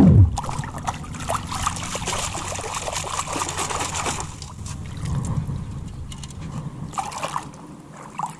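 Lake water sloshing and trickling out of a perforated metal sand scoop as it is lifted and shaken, with many small clicks of sand and gravel rattling inside it. A short loud falling whoosh at the very start.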